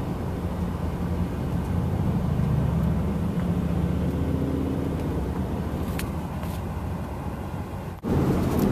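Steady engine and road noise heard from inside a car's cabin while driving in freeway traffic, with one faint click about six seconds in.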